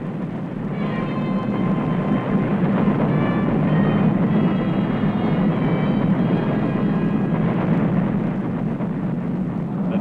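A continuous low rumble of an exploding ammunition dump, with a music score laid over it. The music's held notes come in about a second in and fade out near the end.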